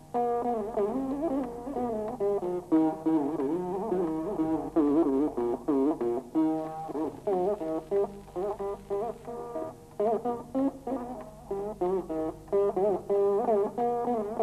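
Saraswati veena playing a Carnatic varnam in raga Begada: a quick run of plucked notes, many of them bent and oscillated along the fret in sliding gamaka ornaments.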